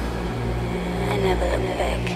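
Electronic dance music from a club DJ mix, with a steady bass line and a short sample that glides up and down in pitch over it about a second in.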